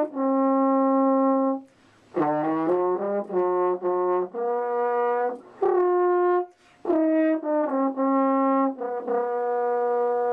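Solo French horn playing a melody one sustained note at a time, in phrases broken by short pauses for breath about two seconds in and again past the six-second mark.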